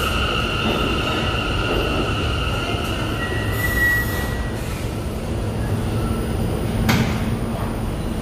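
A Z subway train braking into a station, its wheels squealing in two steady high pitches that fade out about three seconds in. A brief higher squeal follows near four seconds, then a sharp clack about seven seconds in as the train comes to a stop, over the low rumble of the cars.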